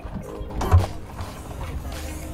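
Car's rear hatch unlatching and swinging up, with a single clunk about three-quarters of a second in, over background music.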